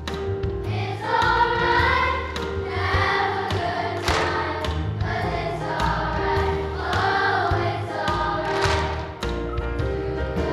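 Children's choir singing a jazz number in unison over an instrumental backing with a steady bass line and a sharp beat.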